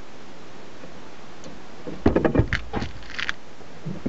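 A short clatter of knocks, clicks and scrapes about two seconds in, from handling a wooden batten and a metal corner bracket on a workbench, over a steady low hiss.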